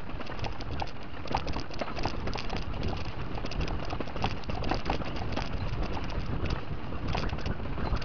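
Mountain bike rolling fast downhill over loose dirt and gravel: tyre crunch and the chain and frame rattling in many sharp clicks, over a low rumble of wind noise on the microphone.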